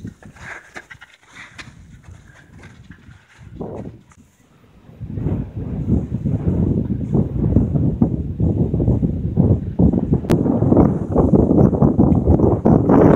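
A hiker's footsteps on the trail, first soft and sinking into snow, then joined about five seconds in by loud wind buffeting the microphone.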